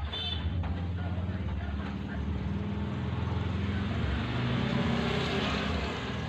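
A motor vehicle engine running steadily: a low hum that grows a little louder about four to five seconds in.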